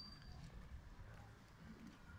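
Near silence: a faint low rumble of outdoor background, with a brief high chirp right at the start.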